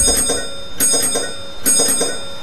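A dome bell on a cartoon bus rings with three bright dings, a little under a second apart, each leaving a ringing tone.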